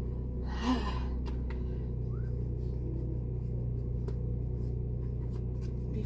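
A sharp strained breath about a second in, over a steady low hum, as a plastic prosthetic socket shell is worked by hand; a few faint clicks follow from the handling.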